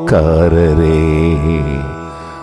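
Male voice singing one drawn-out, wavering note over a low sustained bass note in a Tamil Christian devotional song, opening with a sharp hit; the voice drops away just before the end.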